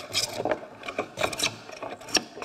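A wooden bench plane taking quick, short strokes along an oak board, each stroke a brief rasping swish, several a second. The plane is levelling the high spots and ridges left by the scrub plane.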